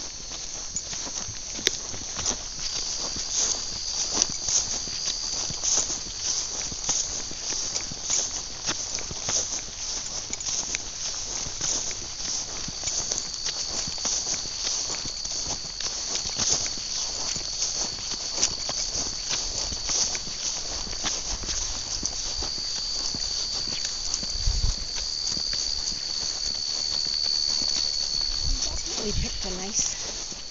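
A dense, steady high-pitched chorus of insects in dry prairie grass, with a higher, steadier whine joining about halfway through. Footsteps tread on a mowed grass path underneath it.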